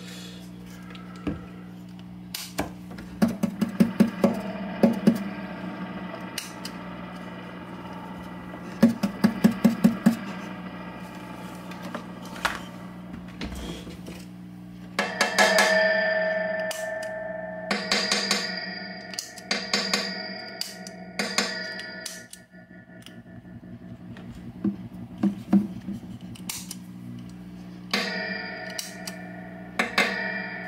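Steady mains hum from the switched-on tube amp, with clusters of clicks and rattles as the reverb footswitch box and meter leads are handled. In the middle stretch some clicks are followed by brief metallic ringing tones.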